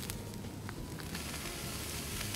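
Sausages sizzling in a wire grill basket held over an open wood fire, with a steady hiss and a few faint crackles.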